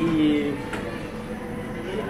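A man's voice holds a short drawn-out syllable at the start, then only steady room background with a faint hum and a light click.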